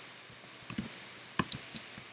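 Typing on a computer keyboard: about seven or eight short, sharp keystrokes at an uneven pace.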